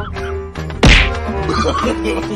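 A single loud whack, like a slap, about a second in, over a music track that plays throughout.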